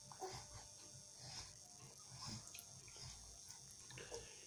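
Near silence: a faint steady high hiss with a few soft, short sounds scattered through.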